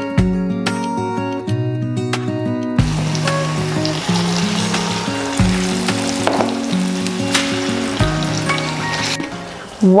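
Plantain slices deep-frying in hot oil in a pan, giving a steady sizzle that comes in about three seconds in and stops about a second before the end. Background music plays throughout.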